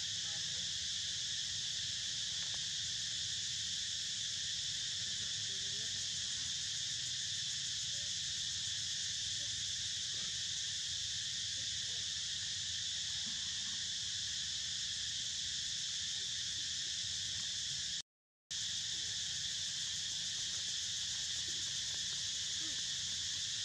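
Steady, continuous drone of a forest insect chorus, several high-pitched layers held at an even level. It is briefly cut off for about half a second near the end.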